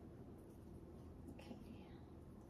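Near silence: room tone, with one softly spoken, almost whispered "okay" about one and a half seconds in.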